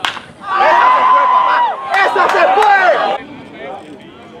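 A sharp crack at the very start, then loud shouting and yelling from several voices for about two and a half seconds, which drops away shortly before the end.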